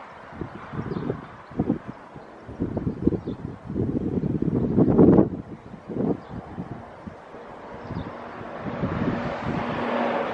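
Wind buffeting the microphone in irregular gusts, loudest about five seconds in.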